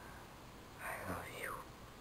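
Speech only: a single softly spoken word, over faint room tone.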